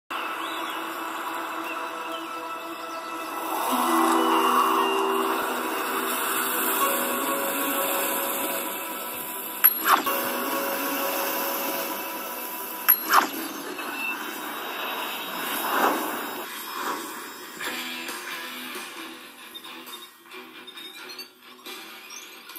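Movie soundtrack music playing from a television speaker and picked up through the air, thin with no low end: long held chords, a few sharp hits about ten and thirteen seconds in, and a swell a little later before it fades toward the end.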